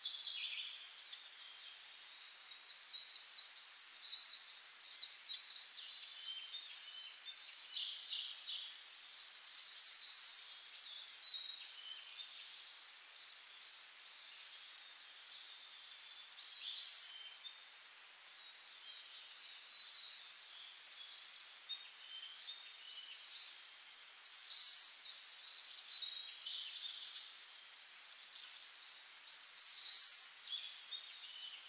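Birds chirping in short bursts of calls every six or seven seconds. A thin, high, steady tone is held for a few seconds twice in the second half.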